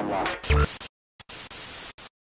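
The intro music ends with a low hit, then after a brief silence a burst of TV-style static hiss plays for under a second as a title-sequence sound effect.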